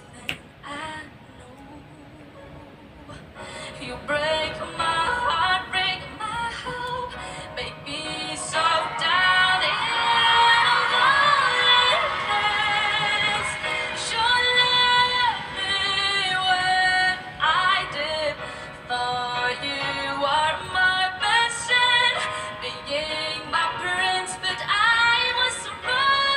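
A teenage girl singing a slow ballad while accompanying herself on a grand piano. She starts softly and her voice grows stronger from about four seconds in, with vibrato on the long held notes.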